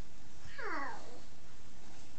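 A house cat meows once, a short call that falls in pitch, about half a second in.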